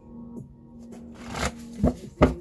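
A stack of paper index cards being shuffled by hand: a papery rush about halfway through, then a sharp knock near the end. Soft background music with a held tone plays under it.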